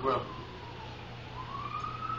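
Faint emergency-vehicle siren wailing: a single tone sliding slowly down in pitch, then rising again.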